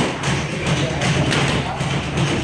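Several dull thuds of gloved punches and footwork on the ring mat during boxing sparring, with a voice and music in the background.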